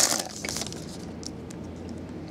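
Foil trading-card pack wrapper crinkling as the cards are pulled out. The crinkle dies away within the first half second, leaving a few faint ticks of handling.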